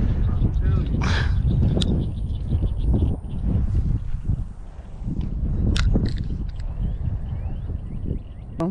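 Wind buffeting the microphone outdoors as a steady, uneven low rumble, with a faint voice about a second in and a couple of sharp clicks.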